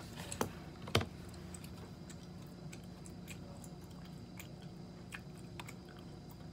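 Computer keyboard typing: sparse, irregular key clicks, with two louder clacks about half a second and a second in.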